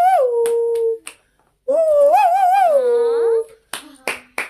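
Two long, wavering, howl-like vocal cries: the first dies away about a second in, and after a short pause the second rises, wavers and slides down at its end. A few sharp clicks fall between them.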